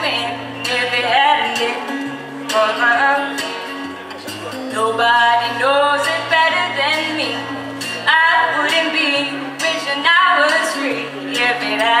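A woman singing a country ballad into a microphone, her sung phrases rising and falling over guitar accompaniment that holds low sustained notes.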